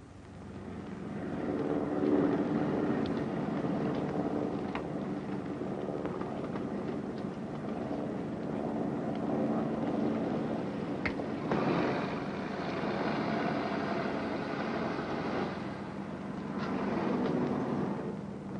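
Propeller light aircraft engine running on the ground. It fades up over the first couple of seconds, then holds a steady drone, with a stretch of louder rushing noise about two-thirds of the way through.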